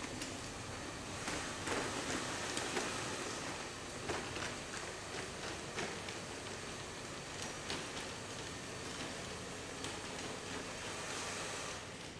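Steady hiss of shop room noise, with scattered light clicks and taps.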